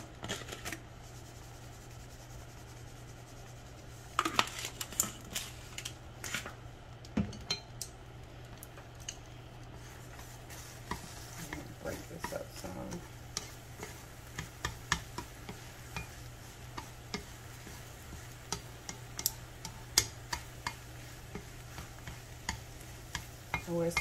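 Wooden chopsticks scraping and tapping against a nonstick frying pan as eggs are broken up and scrambled, with irregular clicks starting about four seconds in. Under it, the eggs sizzle softly over a steady low hum.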